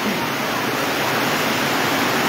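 A steady, even hiss of noise spread across all pitches, with no clear rhythm or tone.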